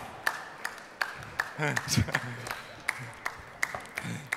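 A few scattered hand claps, irregular, about two or three a second, with a faint voice under them about halfway through.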